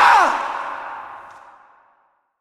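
A person's scream ending, its pitch dropping sharply in the first quarter second, then an echoing tail that fades away to silence.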